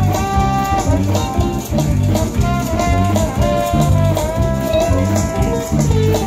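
Live band playing an up-tempo groove: drums and bass keep a steady pulse under electric guitar, with a melody line that holds and bends its notes on top.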